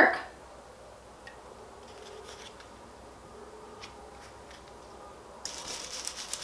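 Faint handling ticks as a plastic stencil is pressed flat onto a wall. Then, about five and a half seconds in, a dry, hissy brushing starts: a stencil brush scrubbing paint through the stencil onto the textured wall.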